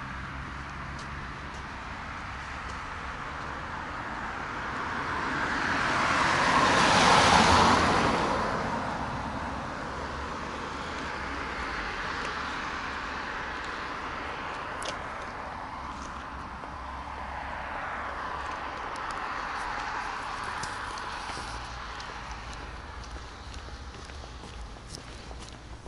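A car passing by on a wet road, its tyre and engine noise swelling to a peak about seven seconds in and then fading away. Two weaker swells of passing traffic follow later.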